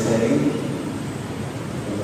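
A man's voice speaking into a microphone. The speech drops away about half a second in, leaving a steady background noise.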